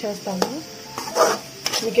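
A perforated metal spoon stirring diced carrots in a steel kadai: clicks of the spoon against the pan, and about a second in a short scraping stir through the frying vegetables.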